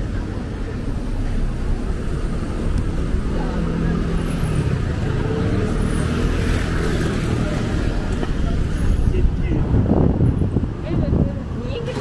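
City street sound: car traffic running close by, with an engine note rising and falling near the middle, and passers-by talking, their voices loudest near the end.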